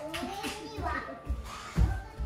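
Young children's voices in pretend play, short exchanges like 'arigato!' and 'domo!', over soft background music, with low thumps late on, the loudest near the end.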